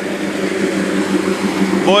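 Houseboat's motor running steadily under way: a low, even drone with the rush of water and wash along the hull.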